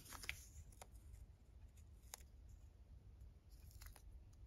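Near silence, with a few faint ticks and clicks as hands handle a freshly cut strip of fabric tape.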